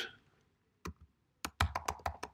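Typing on a computer keyboard: one or two lone keystrokes, then a quick run of key clicks in the second half as a word is typed out.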